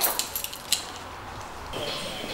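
A few light clicks and clatters of a plastic water bottle being picked up and handled, in the first second or so, then quiet room tone.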